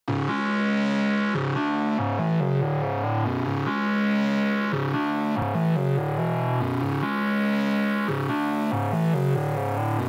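Intro of an instrumental rage-style trap beat: a dark synthesizer chord-and-melody phrase that repeats, with no drums yet.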